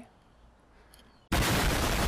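Explosion sound effect: after a brief hush, a sudden loud blast of dense noise breaks in a little over a second in and keeps going.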